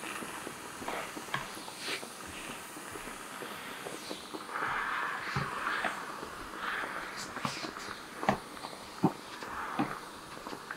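Handheld garment steamer hissing in uneven bursts as steam is passed over a pinned crochet square, with a few light knocks, the loudest two near the end.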